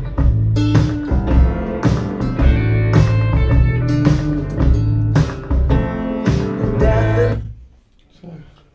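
Recorded music with a steady beat played over a pair of KEF Reference 1 bookshelf speakers in a small treated listening room. The music stops about seven and a half seconds in.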